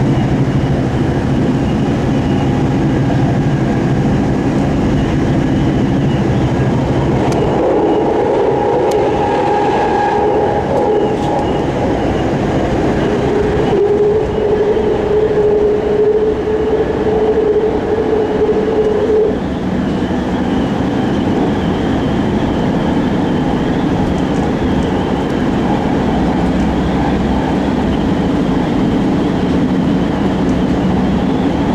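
A BART train running at speed, heard from inside the passenger car: a steady loud rumble of wheels on rail. From about a quarter of the way in, a held whining tone rises over the rumble for roughly ten seconds, then drops away.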